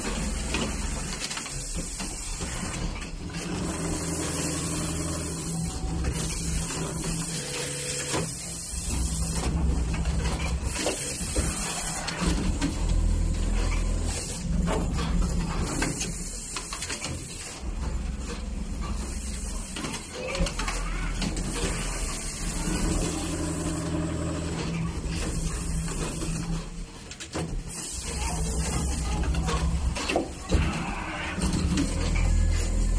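Automatic sleeve-placket sewing machines with Brother 7300 sewing heads running in cycles: motor hum and mechanical whirring that start and stop every few seconds as the machines sew and reset, over a steady low hum.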